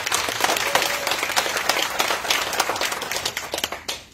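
A small congregation applauding: a dense patter of hand claps that thins out and stops near the end.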